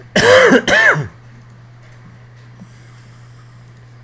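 A man coughing twice in quick succession within the first second, then only a faint steady low hum.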